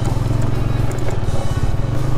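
A motorcycle engine running steadily while riding over a rough, broken road, with background music playing over it.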